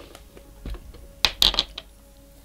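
A few light clicks and knocks of small hard objects being handled, loudest as a quick pair about a second and a quarter in.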